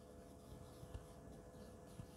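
Faint scratching of a marker pen writing on a whiteboard, over quiet room tone with a thin steady hum.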